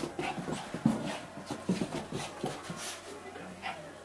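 Small dog playing with a sock: a string of short, irregular dog noises mixed with quick scuffles and clicks.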